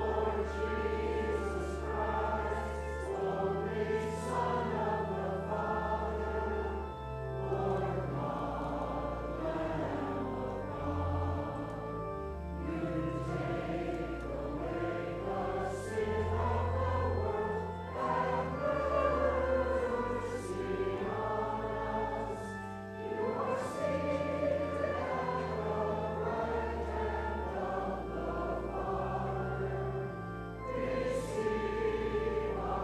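Congregation and choir singing a hymn in unison with church organ accompaniment, the organ's low bass notes held under the voices, with a short break for breath between phrases every few seconds.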